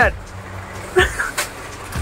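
Busy shop background noise: a low rumble throughout, a brief voice about a second in and a single sharp knock shortly after.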